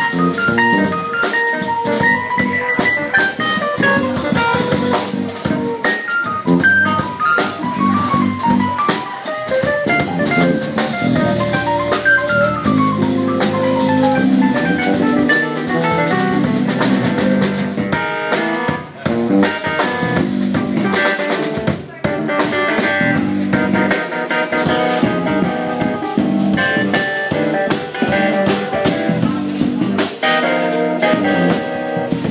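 Live jazz-funk band playing an instrumental on keyboards, electric bass and drum kit, with quick runs of single notes, some falling in pitch, over a busy bass line and drums.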